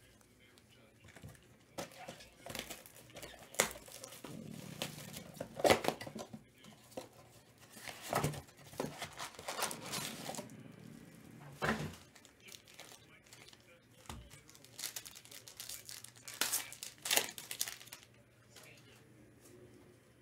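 Trading-card packaging being torn open and handled with gloved hands: irregular bursts of cardboard and wrapper tearing, crinkling and rustling.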